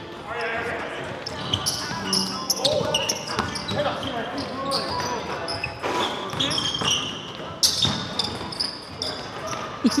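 Live basketball game on a hardwood gym floor: sneakers squeak in short, repeated chirps, the ball bounces, and players call out to each other.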